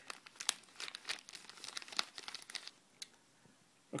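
Packaging being opened by hand to take out a keyboard cover: irregular crinkling, rustling and small tearing crackles for about two and a half seconds, then a single click and quiet.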